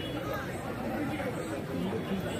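Chatter of several people talking at once, a steady mix of voices with no single voice standing out.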